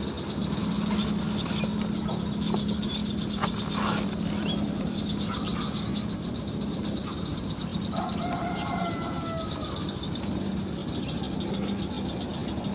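A steady low hum with a few faint clicks, and about eight seconds in a short bird call with several tones.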